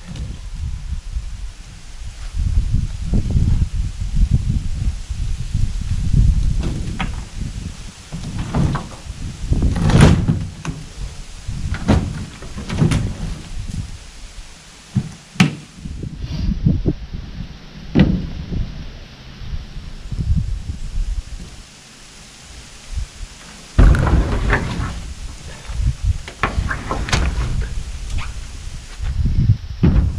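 A heavy maple log being rolled and pushed up a wooden plank ramp into a pickup truck bed: an irregular run of knocks and thumps over low rumbling, loudest about ten seconds in and again a little past twenty.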